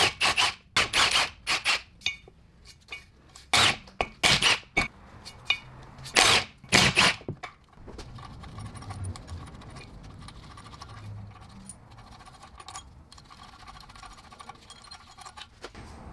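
Handheld cordless wrench run in several short bursts over the first seven seconds, undoing the Torx bolts that hold the driveshaft's rear flex disc to the differential flange. After that come only faint clinks and handling of the loosened bolts.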